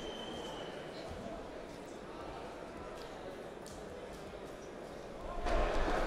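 Ambience of a large indoor sports hall: a steady low murmur with faint distant voices, growing louder about five seconds in.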